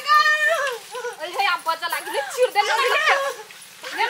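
Raised, high-pitched women's voices crying out in a scuffle, without clear words, several calls one after another; they fade near the end.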